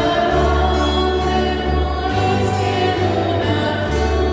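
A choir singing a slow hymn with instrumental accompaniment, in long held chords over a bass note that changes every second or two.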